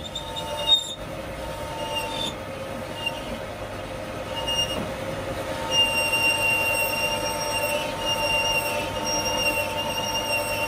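Large metal lathe turning a long steel trailer axle tube, with a steady high metallic squeal and ringing over the machine's running noise; the squeal grows stronger about six seconds in.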